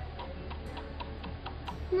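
Light, even ticking, about four ticks a second, over a low steady hum.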